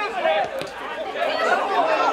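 Several voices talking and calling out at once, overlapping chatter.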